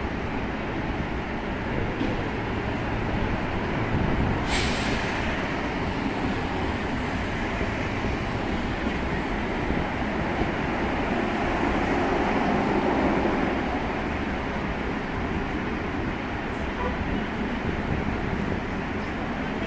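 City street ambience: a steady low rumble of traffic. There is a brief sharp hiss about four and a half seconds in, and the rumble swells louder around twelve seconds in.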